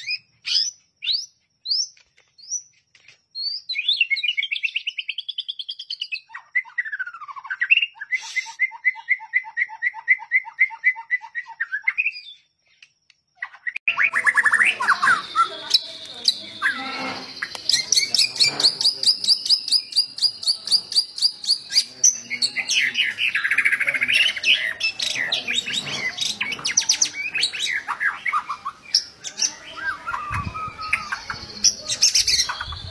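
White-rumped shama (murai batu) singing vigorously: varied whistled phrases and fast runs of repeated trill notes. The song breaks off for a moment just past the middle, then resumes busier, with a noisier background.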